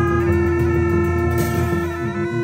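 Tibetan monastic horn music: gyaling, the double-reed oboes, play a melody over a steady held note and a low drone. A bright splash of cymbal noise comes in near the end.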